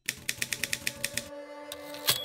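Typewriter sound effect: a rapid run of about a dozen key clacks, about ten a second, as the title text types on. After them a soft held chord of music begins, with one more clack near the end.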